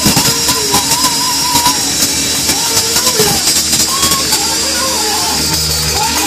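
Live gospel praise music from a church band, a melody line over a steady beat of drums, with the congregation clapping along.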